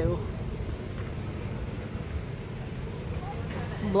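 Steady low outdoor background rumble with no distinct event, a faint woman's voice at the very start and end.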